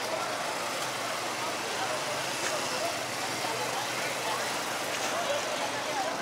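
Busy street ambience: a steady hum of motor traffic with people's voices in the background.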